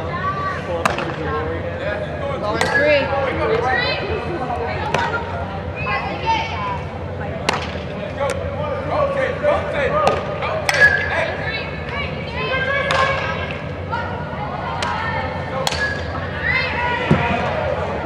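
Sharp knocks of a bat hitting softballs and of balls smacking into gloves, every couple of seconds, with players' voices calling out between them.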